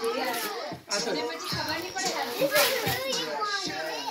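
Several children's and adults' voices chattering over one another, indistinct, with a brief lull just before one second in.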